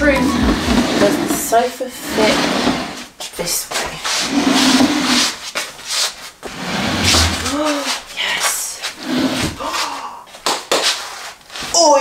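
Scraping and knocks as a sofa is pushed across the floor, with a woman's wordless voice over it.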